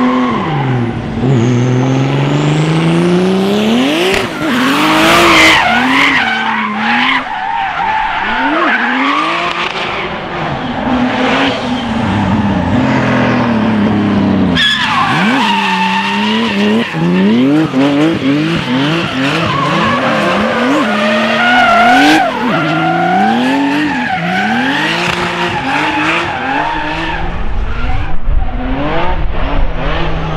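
Drift cars sliding through corners, their engines revving hard in repeated rising and falling sweeps, with tyres squealing and skidding on the asphalt. The sound changes abruptly about halfway through.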